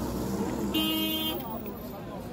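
A vehicle horn gives one short, steady toot about three-quarters of a second in, over the chatter of many voices.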